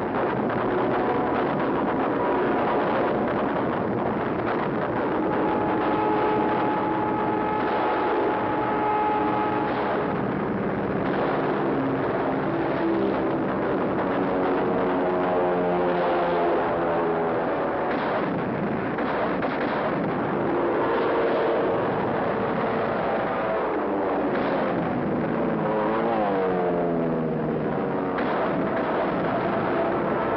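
Continuous anti-aircraft gunfire mixed with aircraft engines whose pitch rises and falls as planes pass, one dropping sharply near the end.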